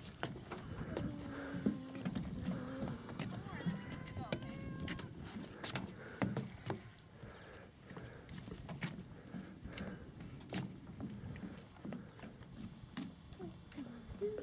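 Indistinct voices in the first few seconds, then a scatter of light knocks and taps from a small child's footsteps on the planks of a wooden dock.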